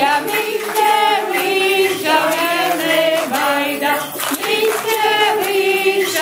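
A group of women singing a Latvian folk song together in several voices, in short sung phrases.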